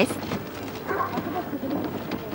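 Footsteps and the wheels of a hand-pushed wooden cart crunching over a gravel path, a loose run of small irregular clicks.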